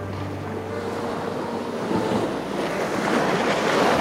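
A rushing noise like wind and surf that swells to its loudest near the end, with faint music underneath.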